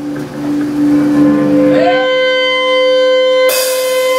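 Electric guitar feedback from the amp: one steady tone, then a higher sustained tone from about two seconds in. Near the end the full band crashes in with drums and cymbals to start the song.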